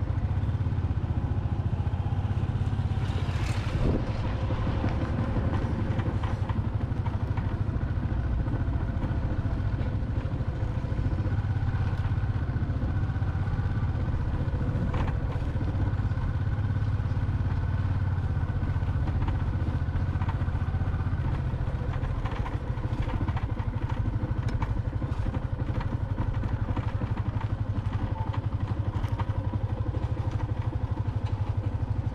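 A small motorbike's engine running steadily at low speed, a constant low hum, with a few brief knocks and rattles from the bike over the lane, one about three to four seconds in and another about halfway.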